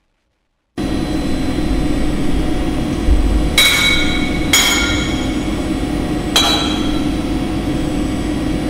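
Silence, then less than a second in a power-noise track starts abruptly: a dense, loud wall of distorted noise over a low hum. Three sharp, metallic-sounding strikes ring out across the middle, each leaving a ringing tone.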